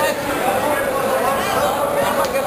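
Spectators' voices: a crowd of people talking and calling out at once, a steady jumble of voices.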